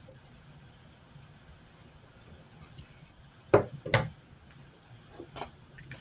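Two short knocks about half a second apart, a little past the middle, as things are handled on a craft table. A few faint clicks follow, with quiet room noise in between.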